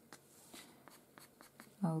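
Pastel pencil scratching faintly on paper in a series of short, light strokes as fine hairs are drawn. A woman starts speaking near the end.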